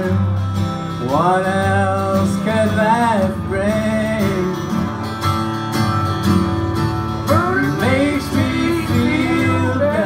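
Live country/bluegrass string band playing: guitar accompaniment under a lead melody that slides up into long held notes, about a second in and again near the end.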